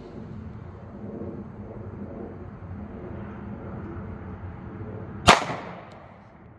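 A single 9mm pistol shot from a Smith & Wesson M&P Shield firing DoubleTap 115-grain +P solid copper hollow points, about five seconds in. It is a sharp crack with a short fading echo, over a faint steady background rumble.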